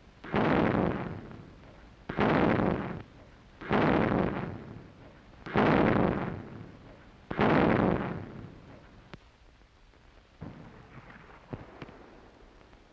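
A series of five loud explosions of battlefield fire, about two seconds apart, each dying away quickly. A few faint pops follow near the end.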